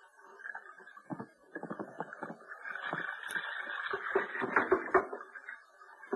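Radio-drama sound effect of a small sailing boat coming about: a rustling, clattering noise that builds for a few seconds, with scattered knocks. The sound is narrow and muffled, as on an old broadcast recording.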